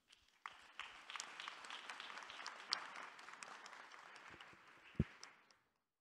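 Audience applauding, starting about half a second in and fading out near the end, with a single thump about five seconds in.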